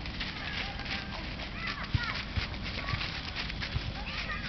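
Small birds chirping in short rising-and-falling calls over a low rumble, with a few soft knocks and one sharper thump about two seconds in.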